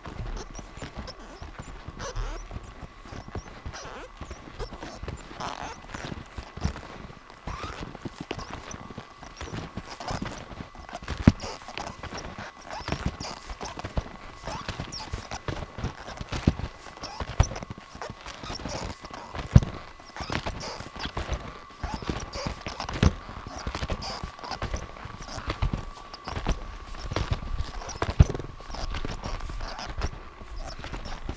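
Ski touring steps up a snow track: skis sliding and crunching in the snow, with irregular knocks from the bindings and pole plants, a few much louder than the rest. A faint steady thin whine runs underneath.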